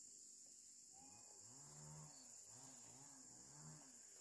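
Near silence with a faint, steady high-pitched buzz of insects such as crickets. From about a second in, a faint, distant voice is heard.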